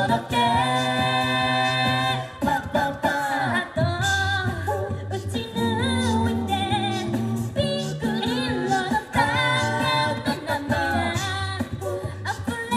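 A cappella vocal group singing in harmony through stage speakers, with lead voices moving over a steady sung bass line.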